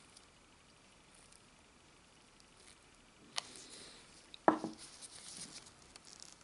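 Faint handling noises from a metal nail-stamping plate and a small stamping tool being picked up and worked: quiet at first, then a sharp click with a short rustle after it, and a second click about a second later.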